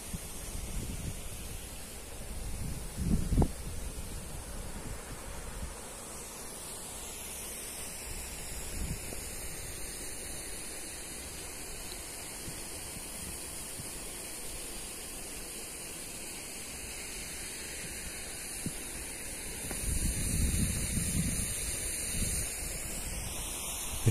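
Outdoor wind on the microphone: a steady hiss of open-air ambience, with low buffeting gusts about three seconds in and again near the end, and a steady high-pitched hiss through the middle.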